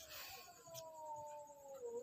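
A dog whining faintly in the background: one long, drawn-out call sliding slowly down in pitch.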